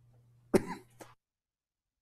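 A man coughs once, loud and short, about half a second in, with a fainter short sound just after it; then the sound cuts off suddenly to dead silence.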